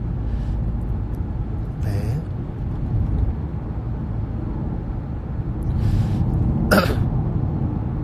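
Steady low rumble of a car's cabin while driving, with a short cough-like sound from the passenger a little before the end.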